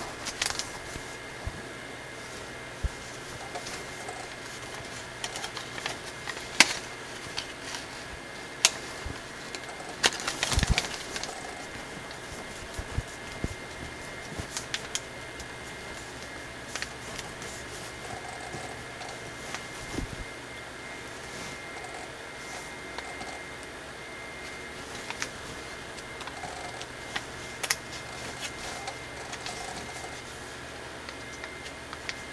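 Thin gold foil paper being folded and creased by hand: scattered sharp crinkles and snaps over a steady faint background hiss, with a denser burst of crinkling about ten seconds in.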